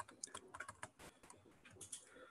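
Faint, irregular tapping of a laptop keyboard: a scatter of light keystrokes and clicks.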